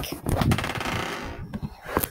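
Sliding door rolling open on its track: a fast, even rattle lasting about a second and a half, with a sharp click near the end.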